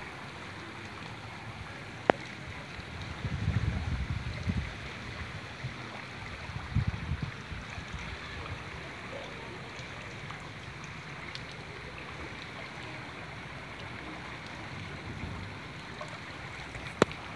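Flash-flood water running steadily down a residential street, a continuous rushing wash. Low rumbles of wind on the microphone rise about three to four and a half seconds in and again near seven seconds, and there is a single sharp click about two seconds in.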